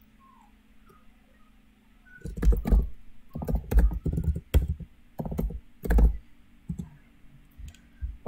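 Typing on a computer keyboard close to the microphone. Irregular keystrokes, each a sharp click with a deep thump, start about two seconds in and run in quick clusters until near the end.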